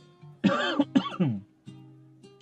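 A man clearing his throat once, about half a second in and lasting about a second, over quiet acoustic guitar background music.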